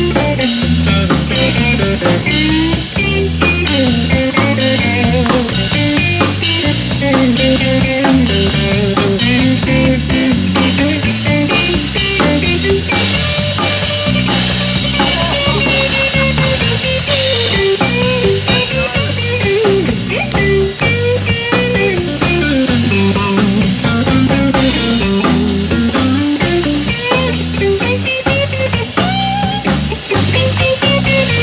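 Live electric blues band playing an instrumental guitar solo: a lead electric guitar with bent notes over a steady drum-kit beat.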